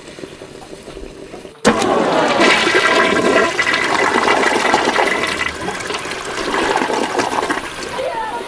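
Loud rushing, splashing water that starts abruptly about a second and a half in and carries on steadily to near the end.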